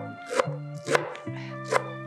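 Chef's knife chopping leafy greens on a wooden cutting board: a few sharp knife strokes roughly half a second apart. Background music with steady low tones plays underneath.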